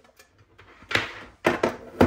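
A portable monitor being set down on a desk: a brief rustle about a second in, then a few quick knocks as its frame and kickstand touch the desktop.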